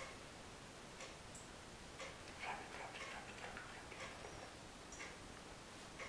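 A clock ticking faintly, once a second, with soft rustling of a hand stroking a rabbit's fur.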